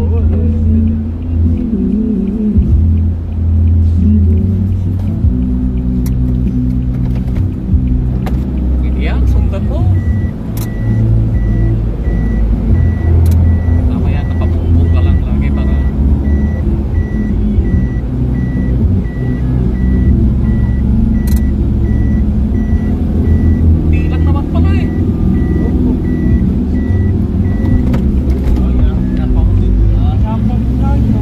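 Music with a heavy bass line playing inside a vehicle cab over the low sound of the engine and road. From about ten seconds in, a high electronic beep repeats at an even pace for roughly eighteen seconds, with a few sharp clicks scattered through.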